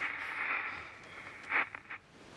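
Quiet indoor room tone: a faint hiss fading away, with one short soft noise about one and a half seconds in.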